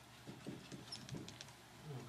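Marker squeaking and tapping on a whiteboard as a number is written: a quick run of short, faint strokes over the first second and a half.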